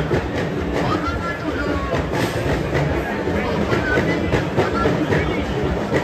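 Dense, steady din of a packed crowd: many overlapping voices and bustle with scattered clicks and knocks, no single voice standing out.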